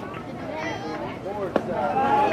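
Spectators' chatter, with one sharp pop about one and a half seconds in: a pitched baseball landing in the catcher's mitt.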